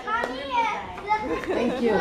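Several young children's voices chattering and calling out at once, overlapping, with no clear words.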